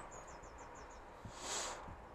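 Faint small bird chirping: a quick run of about six short high notes, followed by a brief soft hiss.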